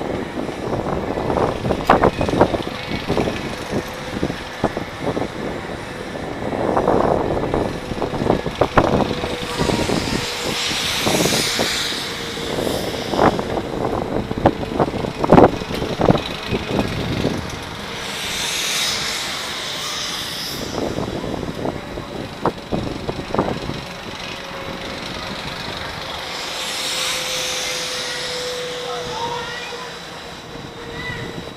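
Flying-swing ride in motion, heard from the seat: air rushing past in swells about every eight seconds as the seat circles, over a steady hum, with frequent knocks and rattles in the first half.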